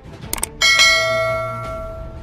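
Two quick mouse-click sound effects, then a bright notification-bell ding with several ringing tones that fades away over about a second and a half: the sound effect of clicking the bell icon in a subscribe animation.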